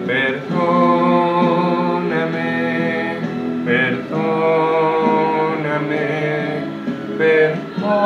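A slow ballad: a man's singing voice with instrumental backing, moving in long held notes.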